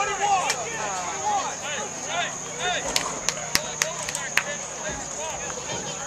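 Indistinct overlapping voices of players and people along a football sideline, with a quick run of about six sharp clicks a little past halfway, over a steady high-pitched whine.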